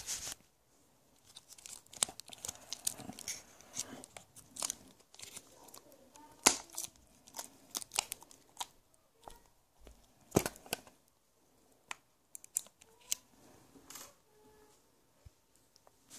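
Irregular clicks, taps and rustling of plastic camera gear being handled close to the microphone, with a few sharper clicks about six and ten seconds in.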